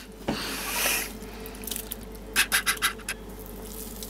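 Hands squeezing and stirring water-swollen nappy gel in a glass bowl of water. A wet, hissing rush of water comes from about a third of a second to one second in, and a quick run of wet squelches and drips follows a couple of seconds in.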